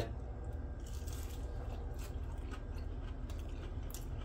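A person biting into and chewing a breaded, cream-cheese-stuffed jalapeño popper: a few faint, scattered crunches over a low steady hum.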